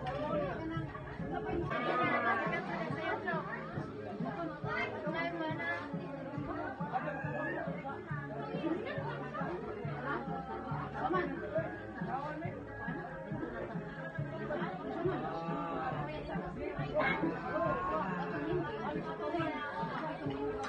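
Several people chatting at once, over background music with a steady beat.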